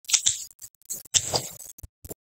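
Computer mouse clicking: a few short, irregular clicks, with a pair about a second in and several light ticks near the end.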